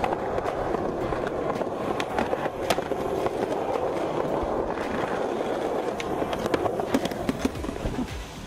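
Skateboard wheels rolling steadily on a concrete path, with occasional sharp clacks from the board.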